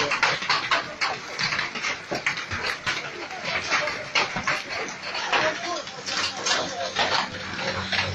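Large hailstones falling with heavy rain, clattering against cars and pavement in dense, irregular hits.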